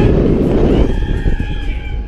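Wind rushing over the on-ride camera's microphone as the ride swings high. About a second in, a rider lets out a long held scream.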